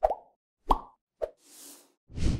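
Sound effects of an animated end screen: three short pops, spaced roughly half a second apart, followed by a soft whoosh near the end.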